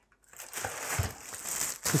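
Plastic wrapping film crinkling and rustling, with cardboard packaging handled, as a product is unpacked from its box. A soft thump comes about a second in.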